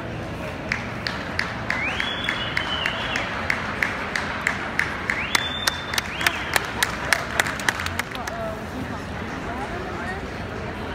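A few spectators clapping in a steady rhythm, about three claps a second, growing louder through the middle and stopping near the end, over the chatter of a crowd. Two high, drawn-out tones sound about two seconds in and again about five seconds in.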